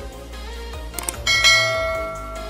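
Subscribe-button sound effect: a mouse click about a second in, then a bright bell chime that rings out and fades, the loudest sound, over background music.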